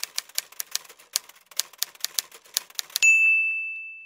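Typewriter sound effect: a quick run of keystrokes, about five a second, then about three seconds in the loud ding of the carriage-return bell, which rings on and fades.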